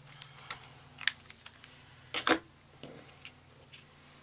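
Adhesive tape runner pressed and dragged along the back of a sheet of patterned cardstock paper, giving a series of short clicks and scrapes, with paper handled on a cutting mat; the loudest stroke comes about two seconds in.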